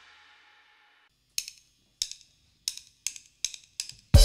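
A drummer's count-in: six short sharp stick clicks coming closer together over a faint amplifier hum, just before the band comes in. At the start, the tail of the previous music fades out.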